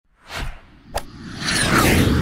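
Logo-sting sound effects: a short whoosh, a sharp hit about a second in, then a whoosh with a falling swish that swells up over the last half second.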